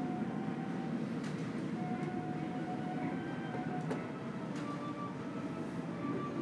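Steady low hum of a large airport terminal hall, with faint held tones drifting in and a couple of sharp distant clicks, about a second in and near four seconds.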